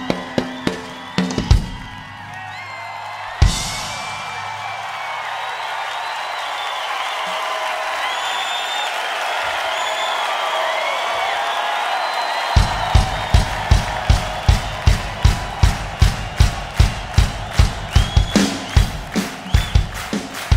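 Live ddrum drum kit solo: a burst of fast hits ending in a cymbal crash about three seconds in, then the drums stop and a crowd cheers and whistles. About two-thirds of the way through, a steady bass drum beat of about two strikes a second starts up under the cheering.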